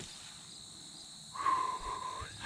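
Crickets chirring steadily in the background. About a second and a half in, a person takes a long, whistling sniff through the nose at the opened bottle of scrape scent.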